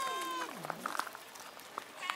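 A cat meowing: one long meow at the start, with a lower call sliding down in pitch just after it, then a few light clicks and scuffs.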